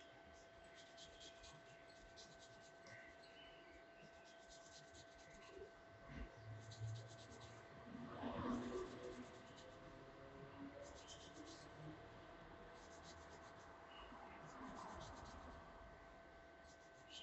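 Faint crackling scratches in short clusters every second or so, as fingertips and nails slide along oiled hair strands while picking nits and lice, with a louder rustle about eight seconds in. A faint steady hum runs underneath.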